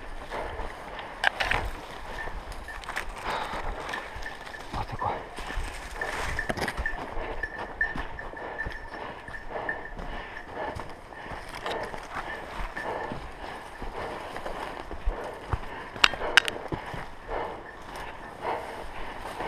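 Footsteps through dry leaf litter and branches brushing against clothing as someone pushes through dense scrub, with irregular twig cracks and a couple of sharp snaps near the end.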